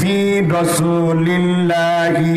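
A man's voice chanting into a microphone in long, held notes that stay near one pitch, with small steps up and down: the sung, intoned delivery of a sermon or recitation rather than plain speech.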